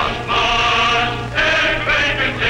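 Choir singing in harmony: a held chord, then a new phrase beginning a little past halfway.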